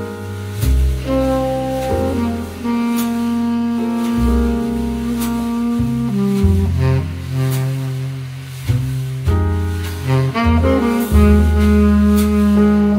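Smooth jazz music: a saxophone playing the melody over walking double bass and light cymbal ticks.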